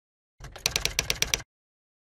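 Typing sound effect: a quick run of key clicks lasting about a second, then it stops.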